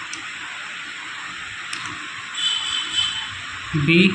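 A few separate keystrokes on a laptop keyboard, each a soft click, over a steady hiss. A short high-pitched tone sounds about two and a half seconds in.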